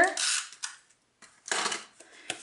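Two short, dry, scratchy bursts of crafting noise, one at the start and one about one and a half seconds in: cardstock being handled and a Snail tape-runner adhesive being run and set down.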